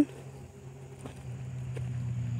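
Low, steady engine hum of an unseen vehicle, growing louder about a second in, with a few faint footsteps on loose gravel.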